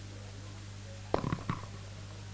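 Steady low electrical hum from the stage sound system. About a second in come three quick, short knocks.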